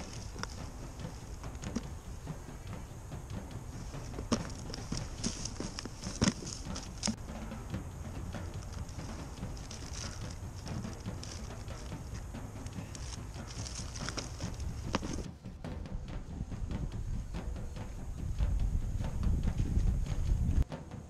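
Handling of a plastic geocache container and plastic bag among dry leaves: irregular crinkling, rustling and small clicks. Near the end these give way to a low rumble.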